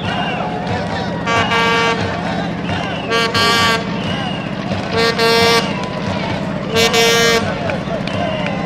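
A horn blown among the spectators, tooting four times at roughly two-second intervals, mostly as a short toot followed by a longer one, over the crowd's steady chatter.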